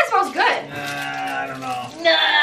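A person's long, low hummed "mmm", held steady for about a second while tasting candy: a sound of liking the taste.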